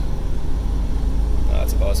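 Steady low drone of a Freightliner Cascadia semi truck heard from inside its cab while it cruises down the road. Engine and road rumble carry on evenly, with no shift or braking change in these seconds.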